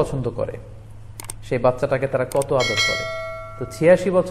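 A subscribe-button animation sound effect laid over a man's speech: a couple of quick clicks about a second in, then a bright bell-like ding that rings for about a second before cutting off.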